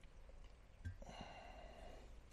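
Near silence, with a faint tap a little under a second in, then a soft hiss lasting about a second.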